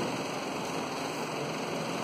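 Room tone: a steady, even hiss with no distinct events.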